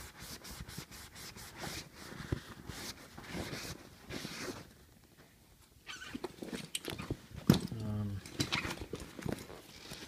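Rustling, rubbing and clicking of a waterproof saddlebag's slick fabric, straps and buckles being handled and turned over, in irregular bursts with a quieter pause about five seconds in.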